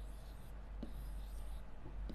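Stylus rubbing faintly on an interactive display's screen as circles are drawn, over a steady low hum.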